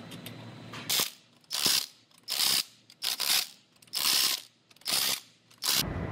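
Wheel lug nuts being run tight with a power wrench: about seven short, loud rattling bursts, one after another, from about a second in.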